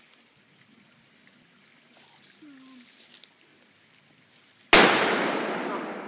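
A single shot from a Remington 770 bolt-action rifle in .30-06: one sharp, very loud crack about three-quarters of the way in, followed by a long fading echo.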